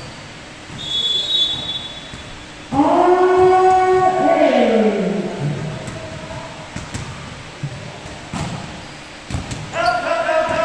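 A short referee's whistle about a second in, then a person's long drawn-out shout from about three seconds in, held and then sliding down in pitch. Near the end, a couple of sharp hits as play resumes, with another voice starting.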